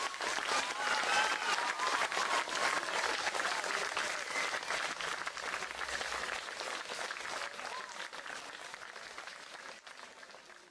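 Crowd applauding, with a few voices calling out in the first couple of seconds; the clapping gradually dies down toward the end.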